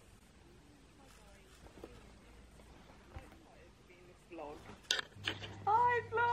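Near silence for about four seconds, then a faint voice played back through a phone's speaker in the last two seconds, with a light click just before it.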